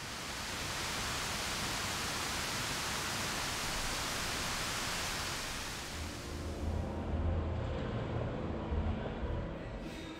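Steady rushing of water cascading down a large outdoor fountain wall. From about six seconds in, the hiss thins out and low music notes come in beneath it.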